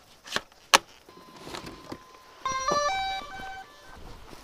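Two sharp clicks, then a faint steady tone, then a quick tune of electronic beeps stepping up and down in pitch, lasting about a second: the power-up chime of a DJI Phantom quadcopter.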